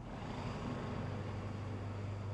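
Street ambience with a vehicle engine running steadily: a low, even hum over a wash of traffic noise.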